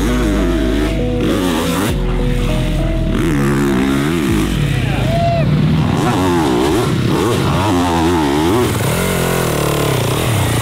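Motocross dirt bike engines revving up and falling back again and again, the pitch sweeping up and down every second or so as the riders work the throttle, with music underneath in the first few seconds.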